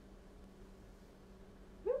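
Quiet room with a faint steady hum. Near the end comes a woman's short rising exclamation, "whoop".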